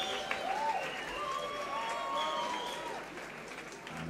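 Concert audience applauding, with a few voices calling out over the clapping. The applause dies down toward the end.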